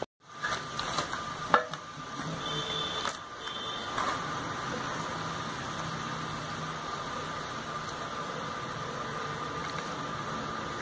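A steady machine-like hum with a faint held whine, with a few short knocks in the first few seconds.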